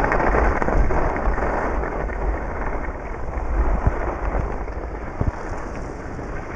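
Wind rumbling over the microphone of a body-worn camera skiing downhill, with the steady hiss and scrape of skis on cut-up packed snow and a few sharp knocks near the end.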